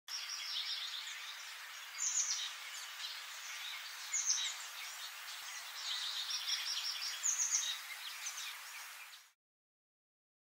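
Birds chirping, with bursts of short, high chirps and trills over a steady background hiss. The sound cuts off suddenly near the end.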